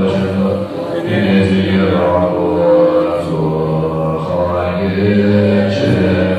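Tibetan Buddhist monks chanting in unison in low voices, with long held notes that shift every second or two.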